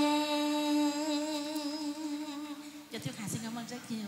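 A woman's voice through a microphone holding the long final sung note of a vọng cổ song, wavering slightly and fading out after about three seconds. A brief, different voice follows near the end.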